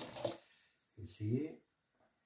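Hot water from a kitchen tap running over a paint-tube cap in the sink, stopping about half a second in. About a second in, a short vocal sound from a man.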